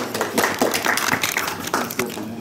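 Audience applauding: many hand claps overlapping, easing off a little near the end.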